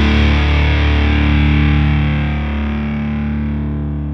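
Rock music: a distorted electric guitar chord over a low bass note, held and ringing out as a song's closing chord. It slowly fades, with the treble dying away first.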